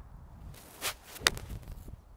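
A seven iron striking a golf ball once, a single sharp click about a second and a quarter in. The strike is slightly thin.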